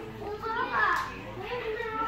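Indistinct talking with children's voices among it, no clear words; loudest a little before a second in.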